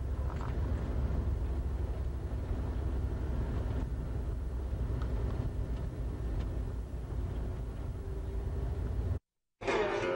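Busy city street ambience: a steady low rumble of traffic and crowd noise picked up by a camcorder microphone. Near the end, the sound cuts out for a moment and a plucked guitar starts.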